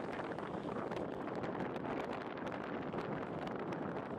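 Steady wind rush on the microphone mixed with a rapid patter of small knocks and rattles from a bicycle riding over a bumpy, uneven road surface.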